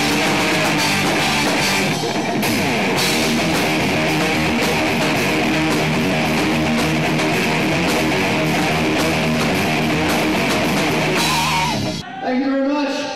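Live rock band playing: electric guitar and drum kit with cymbals, loud and steady.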